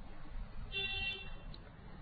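Low room hum, and about a second in a brief high-pitched tone of several steady pitches together that lasts about half a second.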